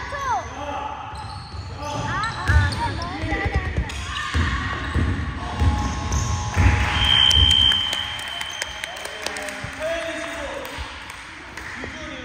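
A basketball bouncing on a hardwood gym floor in dribbles and passes, with girls' voices calling out in the echoing hall. A brief high squeak comes about seven seconds in.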